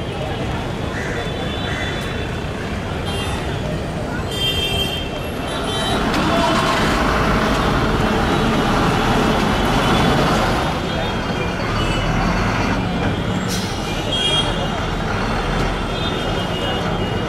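Busy city street traffic, with a bus passing close and growing louder for a few seconds midway. There are short horn toots near the start and near the end, and people's voices in the background.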